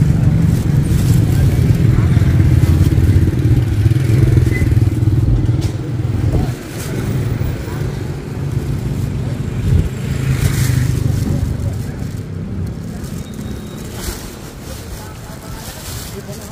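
A motor vehicle engine running close by, a steady low hum that dips briefly about six seconds in, carries on, then fades away over the last few seconds.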